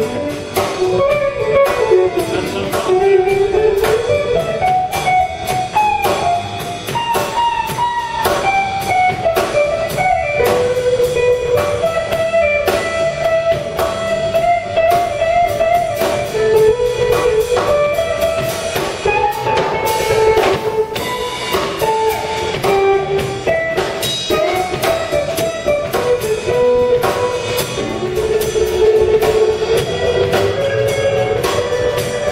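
A live jazz combo playing: a hollow-body archtop electric guitar picks out a single-note melodic line over upright bass and a drum kit's steady cymbal and drum strokes.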